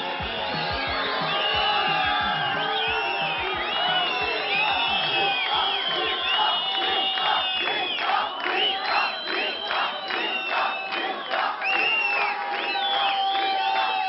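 Film soundtrack of a concert scene: music with a drum beat in the first few seconds, and a crowd shouting and cheering that pulses in a steady rhythm from about the middle on.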